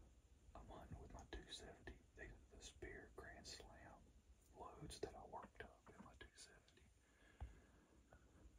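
A man whispering softly in short, breathy phrases.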